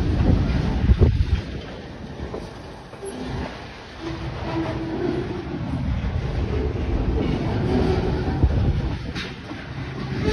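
Freight train cars (covered hoppers and boxcars) rolling past, their steel wheels rumbling steadily on the rails. There is a sharp knock about a second in and a quieter stretch a few seconds later.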